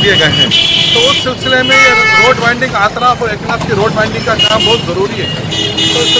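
Street hubbub of people talking, with vehicle horns honking: one about half a second in, another around two seconds, and another near the end.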